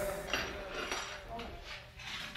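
Faint background voices with light clinking, like dishes or cutlery, in a quiet stretch just after a sung phrase ends.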